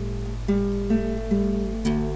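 Acoustic guitar playing slowly, with new plucked notes coming in about every half second over held lower notes.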